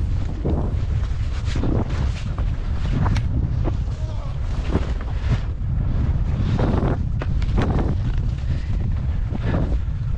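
Wind rushing over the microphone during a fast ski descent, a heavy steady rumble, with short scraping bursts every half second to a second as the skis cut across the snow.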